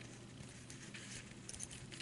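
Faint clicks and rubbing of small plastic toy parts as a shovel accessory is pushed onto the peg at the end of a toy crane's boom, a few light ticks near the end.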